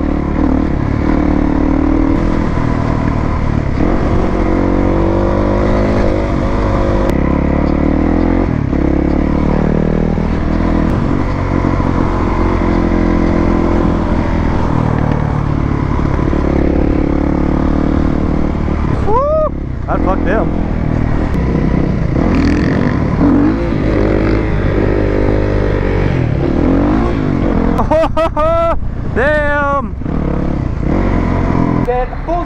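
Yamaha WR450 supermoto's single-cylinder four-stroke engine under way, its pitch rising and falling with the throttle, with wind rushing over a helmet-mounted microphone. Brief wavering high tones break in about 19 seconds in and again near the end.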